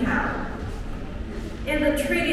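Speech: a voice talking, breaking off for about a second in the middle over a low room hubbub, then starting again near the end.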